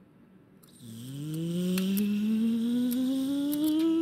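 A person humming one long tone that climbs steadily in pitch for about three seconds, starting about a second in after near silence: a voiced rising sound effect for the toy figure.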